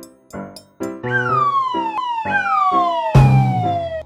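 Background music of short plucked notes, with a cartoon falling-whistle effect gliding steadily down in pitch. The glide starts about a second in and restarts once. A loud thump lands about three seconds in.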